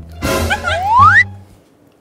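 Comic cartoon sound effect over background music: a burst of noise with a whistle-like tone sliding upward in pitch, ending about a second and a quarter in, after which the music drops out.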